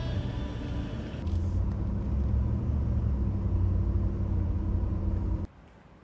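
Steady low engine and road rumble inside the cabin of a moving Ford, getting louder about a second in and cutting off abruptly near the end.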